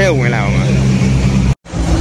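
Ferrari sports car engines idling steadily as the cars roll slowly past in a line. The sound cuts off suddenly about a second and a half in.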